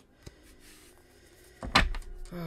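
Tarot cards being handled over a wooden table: a faint click and a soft slide of card, then one sharp thump near the end, together with a breathy "oh".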